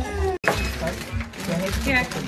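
Voices over background music, broken by a split-second gap in the sound about half a second in and a short burst of crackly noise just after it.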